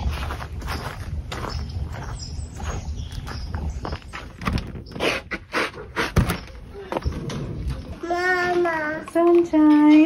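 Clicks and knocks of a door knob being turned and a house door opened, over low rumbling handling noise. Near the end a toddler's high voice calls out in a wavering, sing-song pitch.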